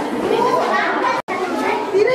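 Many children's voices chattering and calling over one another, with a momentary break to silence a little past halfway.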